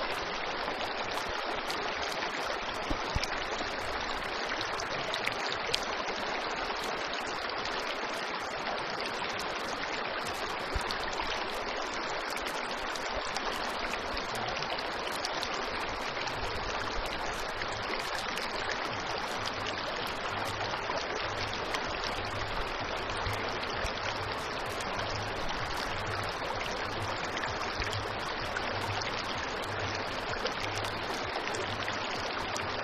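Shallow mountain stream running over stones and small rapids: a steady rush of water with no breaks.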